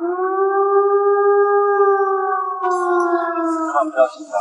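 Siren giving one long wail, held at a steady pitch, then sagging slightly and stopping near the end, with a hiss coming in after about two and a half seconds.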